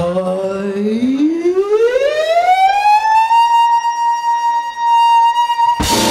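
A female jazz vocalist sings one long unaccompanied note. It slides up from low to high over about three seconds and is then held steady. The full swing big band crashes back in just before the end.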